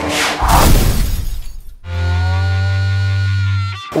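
Editing sound effects at a scene transition: a loud noisy burst lasting about a second and a half, then a steady held low note with overtones for about two seconds that cuts off suddenly near the end.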